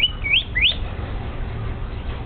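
Pet myna giving three short, rising whistled chirps in quick succession within the first second.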